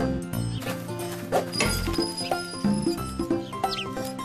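Background music of a children's cartoon score, with short low notes and percussive hits, and a brief rising sliding sound near the end.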